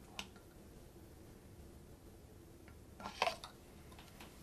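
Quiet handling of a micropipette and a plastic bottle: a single faint click just after the start, then a short cluster of clicks and knocks about three seconds in, the loudest sound here, against faint room hum.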